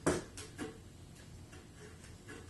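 A few light clicks and knocks: a sharp one at the start, then two softer ones about half a second in.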